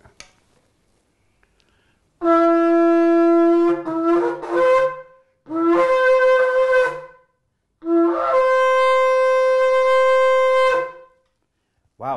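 Kudu-horn shofar blown in three loud blasts, each stepping up from a lower note to a higher one; the first breaks into short broken notes near its end, and the last is held longest, for about three seconds.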